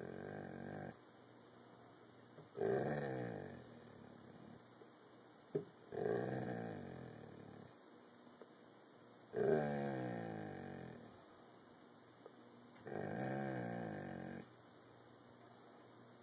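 A dog making five drawn-out, growling 'talking' vocalizations, each lasting a second or so and sliding down in pitch, with short quiet pauses between them.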